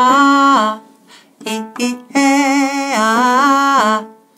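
A woman singing a vocal-exercise demonstration on vowels: a sung phrase stepping between a few pitches, two short detached notes, then a longer held line stepping in pitch with a slight waver near its end, showing the exercise's mix of staccato and legato.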